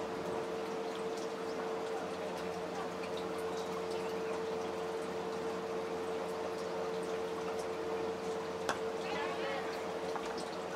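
Steady background hiss with a constant hum from the field microphone, and a single sharp knock near the end, the cricket bat striking the ball.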